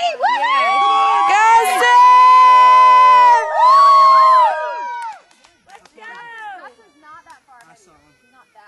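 Several spectators cheering and whooping loudly, with long held yells from a few voices at once. There is a short break about three and a half seconds in, and after about five seconds the cheering dies down to scattered quieter voices.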